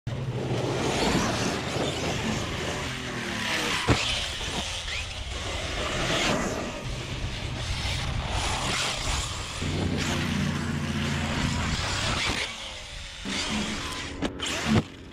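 Large brushless electric RC truck running hard across loose dirt: the motor pitch shifts with the throttle over a continuous hiss of tyres and wind on the microphone, with a sharp knock about four seconds in.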